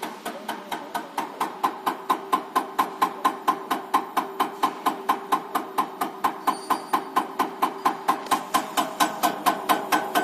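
Electronic unit injector (EUI) running on a diesel injector test bench, driven by the bench camshaft at 260 rpm: a steady run of sharp knocks, about four a second, one per cam stroke, over a steady hum. The knocks grow louder about a second and a half in.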